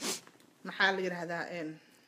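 A brief rush of noise, then about a second of a person's voice: one held vocal sound whose pitch falls slightly.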